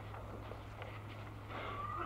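Steady low hum and hiss of a 1940s trial recording, with a faint wavering sound near the end.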